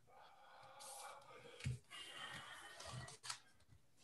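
Near silence over a video-call line: faint, indistinct sounds with a soft low thud a little over a second and a half in.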